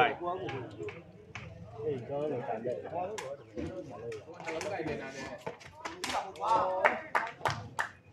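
Spectators' voices chattering and calling out around a sepak takraw game, with a scatter of sharp knocks that grow thickest in the last three seconds.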